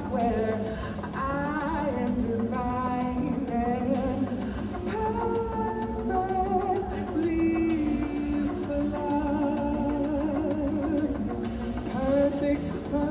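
A woman singing into a handheld microphone through a PA system, with notes that slide between pitches and a long held note in the second half.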